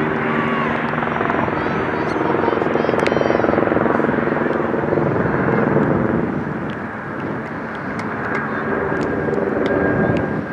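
An aircraft engine droning overhead, with a steady hum that swells about two seconds in and eases off after about six seconds.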